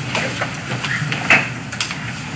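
Room noise of people moving about: scattered small clicks and knocks over a low steady hum, with one louder knock about a second and a half in.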